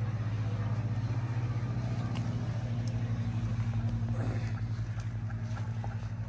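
A small engine running steadily nearby: a low hum with a fast, even pulse.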